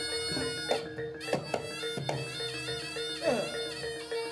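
Live jaranan accompaniment music: a slompret, the Javanese double-reed trumpet, playing a held, wavering melody over struck drum strokes, with a sliding note near the end.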